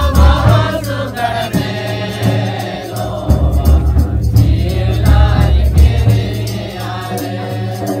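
A Mundari Christian wedding song: a group of voices sings together over music with a deep bass beat.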